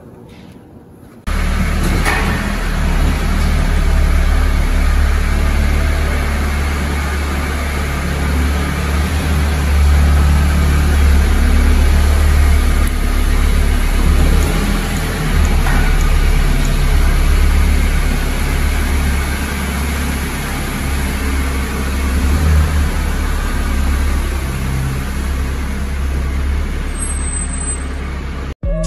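A car's engine running in an underground car park, a steady low rumble that eases a little near the end as the car drives away.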